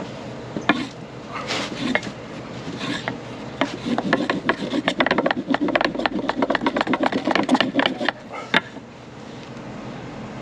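A flat wooden board rubbing back and forth over a cotton-ball roll on a wooden plank: the Rudiger roll friction-fire method, working the cotton to a smoulder. The strokes are scattered at first, then turn into a fast, hard rub from about four seconds in, and stop about eight seconds in with a single click.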